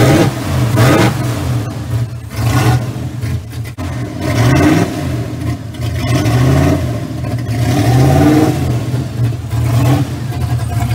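Loud 1983 Camaro V8 with open exhaust headers, running just after start-up with the throttle blipped several times, each rev rising and falling back to idle.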